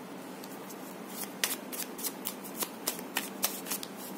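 A mini tarot deck being shuffled by hand: a run of quick, irregular clicks and flicks of the cards against each other, starting about half a second in.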